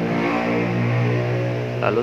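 A man's voice holding one long filler hum ("hmm") between phrases, its pitch dropping about half a second in. The word "lalu" follows near the end.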